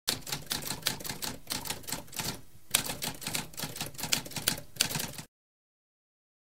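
Typewriter typing: a fast run of key strikes, with a short break about two and a half seconds in, cutting off suddenly a little after five seconds.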